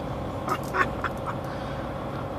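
Steady low hum inside an idling truck cab, with a few short squawk-like sounds of unclear source about half a second to a second in.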